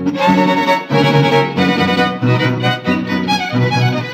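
Mariachi band playing an instrumental passage of a son jalisciense: violins lead the melody over a rhythmic bass line.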